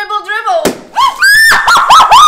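A water balloon bursting over a person's head with a single sharp pop about half a second in, followed by loud overlapping screams and shrieks from several people.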